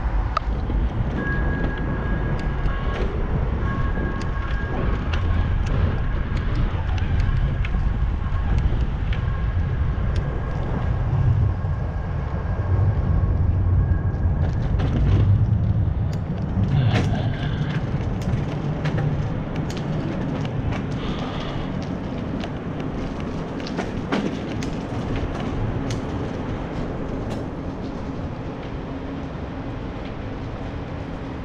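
Wind rushing over the microphone of a moving head-mounted action camera, with rumble from riding over pavement. A faint pair of steady high tones sounds on and off for about the first half, and the rush eases in the second half, broken by a few sharp knocks.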